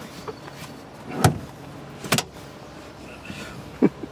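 Thumps and knocks of a person squeezing into the cramped rear seat of a two-door Fiat 500 and bumping against the seats and cabin trim. There is a loud thump about a second in, a quick double knock about a second later, and another knock near the end.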